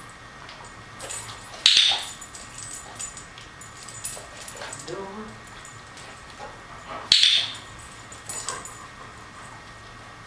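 Two sharp clicks of a handheld dog-training clicker, about five and a half seconds apart, each marking the German Shepherd touching the post-it target with her nose. Between them the dog whines softly.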